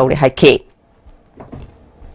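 A voice finishing speaking, then low background noise with one short, faint knock about one and a half seconds in.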